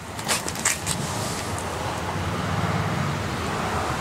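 A motor vehicle engine running steadily, slowly growing a little louder, after a couple of clicks in the first second.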